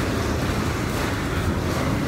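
Steady rushing noise with a low rumble underneath: the ambient noise of an indoor pool hall.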